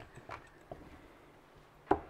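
Faint clicks of steel-tip darts being pulled out of a bristle dartboard, then one sharp knock near the end.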